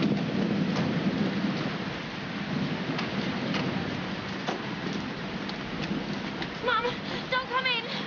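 Heavy storm rain and wind, a steady loud rush of noise with a low rumble under it, with a few sharp knocks in it; voices come in near the end.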